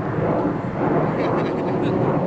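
Steady drone of aircraft passing overhead, a line of planes flying across the sky, with background voices.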